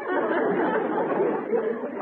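Studio audience laughing together, steadily loud.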